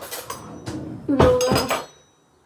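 Metal cutlery clinking and knocking on a hard kitchen worktop: a few sharp knocks with a brief metallic ring, the loudest about a second and a quarter in, as a table knife is set down on the counter.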